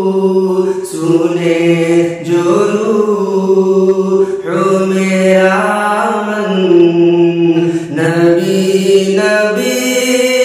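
A man singing a naat, an Islamic devotional song in praise of the Prophet, solo and without instruments. He sings in long, drawn-out held notes that step from pitch to pitch.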